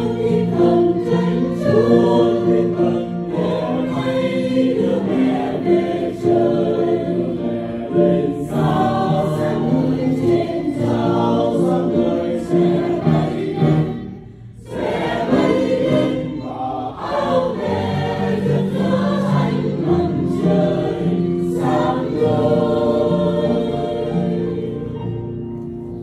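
Mixed church choir of men and women singing a Vietnamese Catholic hymn in parts, with a short break in the singing just past halfway before the voices come back in.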